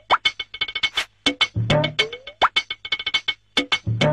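Playful comedy background music: quick, short plucked and percussive notes with springy rising slides, repeating in a short loop.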